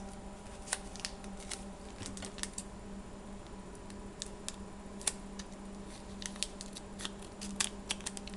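Scattered light clicks and taps of trading cards and their opened packs being handled on a tabletop, at irregular times, over a steady low hum.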